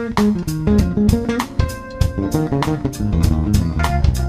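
A live jazz-fusion band playing, with a busy electric bass line to the fore over a steady drum beat of about four strokes a second.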